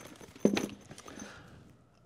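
Push Unite goggle hard case handled and set down on a table: one sharp knock about half a second in, followed by a few soft handling sounds.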